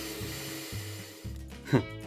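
Electric drill running steadily as it drills out the steel rivets of a cleaver's handle, stopping about one and a half seconds in. Background music plays underneath.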